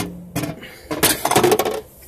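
Metal hand tools being handled, clinking and rattling: a sharp knock at the start, then a quick run of clattering clinks from about a second in.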